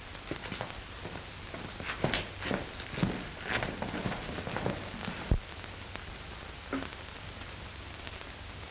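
Scattered light knocks and clicks, with one sharper knock about five seconds in, over the steady hiss and hum of an old optical film soundtrack.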